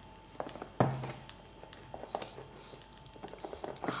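Faint taps, clicks and rustles of hands handling a cardboard smartphone box.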